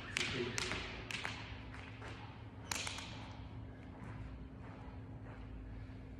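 Trainer footsteps on a rubber gym floor: a quick run of sharp taps in the first second or so, then slower and sparser, over a steady hum.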